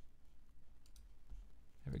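A few faint computer mouse clicks, used to pick an item from a right-click menu, heard over quiet room tone.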